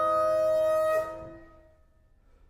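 Bassoon with piano holding a loud sustained note, which breaks off about a second in with a brief downward slide. The sound then rings away in the hall's reverberation to near quiet.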